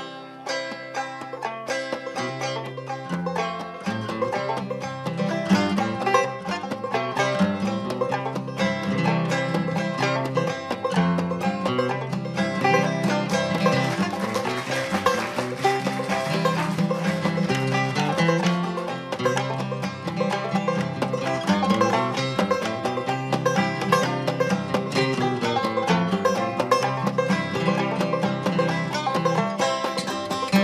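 Acoustic bluegrass band playing an instrumental, a banjo lead over mandolin and upright bass; the low bass notes fill in and the sound gets fuller a few seconds in.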